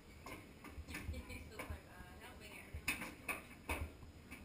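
About half a dozen irregular clicks and knocks from a child's ride-on fire truck being bumped and handled as a toddler is helped back into its seat, with a faint voice in between.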